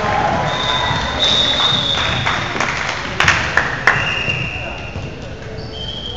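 Indoor volleyball rally in a large gym: a steady hubbub of voices, with three sharp volleyball contacts in quick succession a little after three seconds in.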